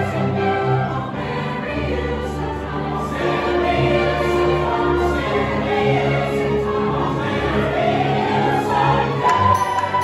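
A large mixed youth choir singing with instrumental accompaniment, holding long notes, with a rising phrase near the end that settles on a high held note. Heard from the audience in a reverberant hall.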